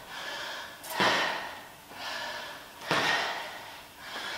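A person breathing hard during walking lunges: three forceful exhalations, about a second or two apart, each fading quickly.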